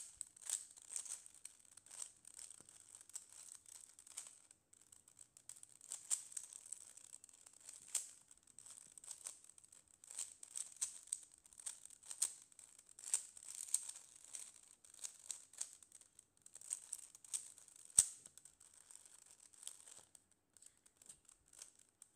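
Plastic 3x3 Rubik's cube being scrambled: rapid, irregular clicking and rattling as its layers are turned, with one sharper click late on.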